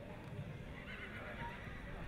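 A horse whinnying faintly, with low background noise.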